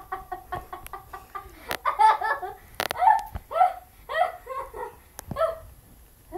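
A girl laughing in a long run of short pulses, quick and light at first, then louder, about two a second.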